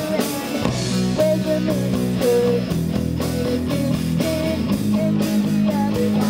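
Live rock band playing an instrumental stretch of a song: electric guitars and bass guitar over a steady drum-kit beat, with no vocals.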